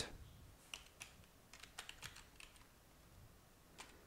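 Faint keystrokes on a computer keyboard: a scattering of short clicks at an uneven pace, with small pauses between bunches of keys.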